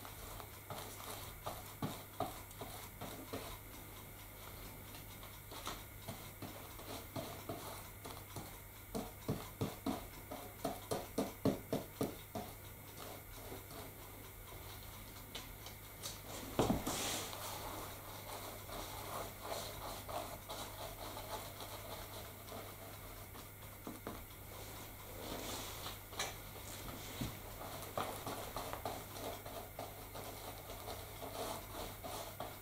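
A paintbrush dabbing and stroking a white coating onto a model railway layout: soft, irregular taps that come quicker and louder for a few seconds in the first half, about three a second. A single sharper knock about halfway through.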